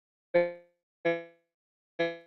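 Two identical short pitched notes about 0.7 s apart, each starting abruptly and dying away quickly, like single keys struck on an electronic keyboard.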